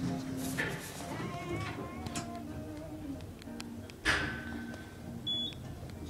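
Elevator car operating after a floor call: low steady tones, then a sharp clunk about four seconds in followed by a brief steady high tone.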